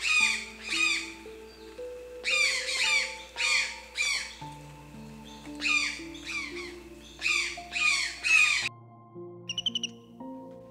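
Rhinoceros hornbill calling: harsh squawks in runs of three to five, each note falling in pitch, over soft background music. Near the end the squawks stop and a few quick, higher chirps follow.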